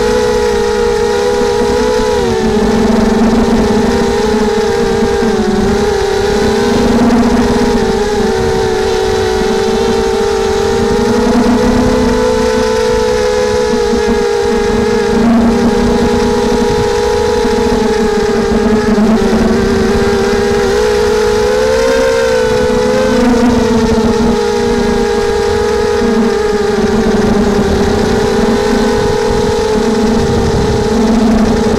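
Racing quadcopter's brushless motors and propellers whining steadily, the pitch dipping and rising every few seconds as the throttle changes.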